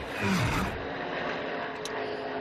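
A pack of NASCAR Cup stock cars running flat out, their V8 engines a steady drone, with a louder swell of noise in the first half second.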